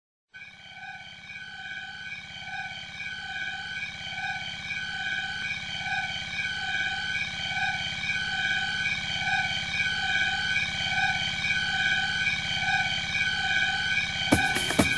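Sustained synthesizer chord fading in slowly, with a whooshing sweep rising and falling a little more than once a second and no drums yet: the beatless intro of an electronic house track.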